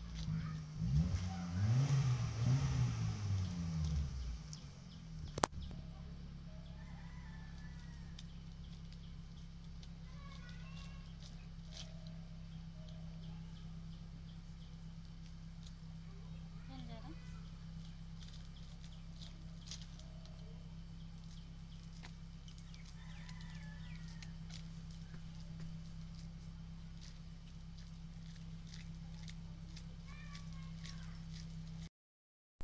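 Dried maize cobs being shelled by hand, the kernels giving faint scattered clicks and crackles over a steady low hum. In the first few seconds a louder low, drawn-out call, a voice or an animal, rises and falls, and a single sharp click comes about five seconds in.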